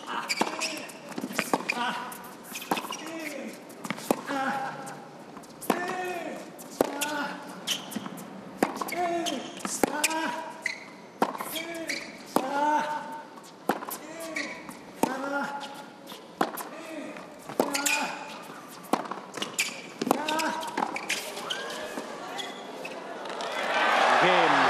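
Tennis rally on an indoor hard court: the ball is struck hard about every second and a bit, most strokes with a player's short grunt. The crowd starts cheering right at the end as the rally finishes.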